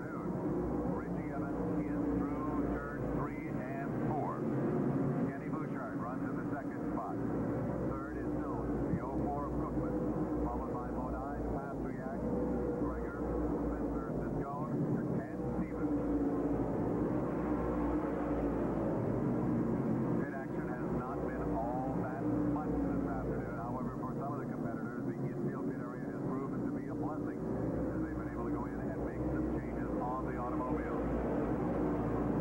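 A pack of V8-powered modified race cars running at speed on a paved oval, their engines making a continuous drone whose pitch wavers up and down as the cars pass. The sound is muffled, with no high end, as on an old videotape recording.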